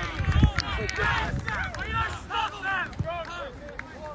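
Several raised voices talking and calling out at a distance, with low rumbling bursts on the microphone early on.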